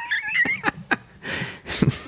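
A person laughing in uneven, breathy bursts, with a high-pitched squeal of laughter at the start.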